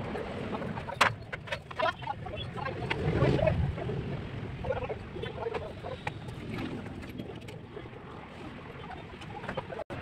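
Bird calls with a few sharp knocks, the sharpest about a second in, and a low rumble that swells briefly around three to four seconds in.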